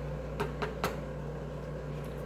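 A steady low hum, like a running appliance, with three short light clicks in the first second.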